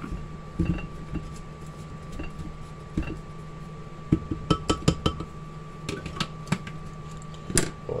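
A silicone spatula stirring sugar and molasses in a glass blender jar, knocking and scraping against the glass in irregular light clinks that come thickest about halfway through. Near the end, the blender's lid is set on the jar with a sharper clack.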